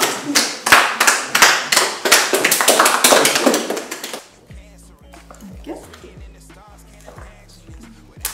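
A small group clapping and cheering, loud quick claps several a second, for about four seconds; then it stops and only quiet background music with a stepping bass line remains.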